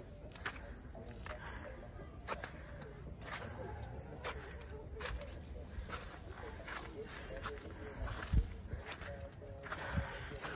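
Faint background voices of people talking, with scattered light clicks and footsteps on a dirt path and a single low thump about eight seconds in.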